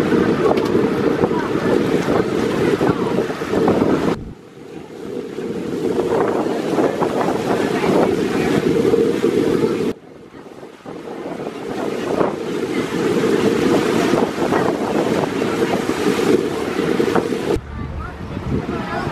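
Wind buffeting the microphone aboard a small boat under way on open water, with the rush of water beneath. The noise drops away abruptly twice, about four and ten seconds in, then builds back up.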